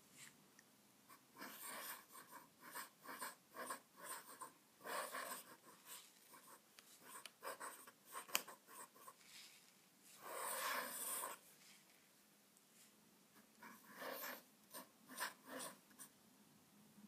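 Faint scratching of a Sheaffer fountain pen's 2 mm steel calligraphy nib on paper as it writes a run of short pen strokes, with one longer stroke about ten seconds in.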